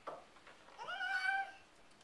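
A small dog gives one short, high whine lasting under a second: it rises quickly, then holds a steady pitch. A fainter, very brief sound comes just before it.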